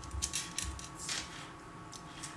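A few faint clicks and rustles in the first second, over a faint steady hum.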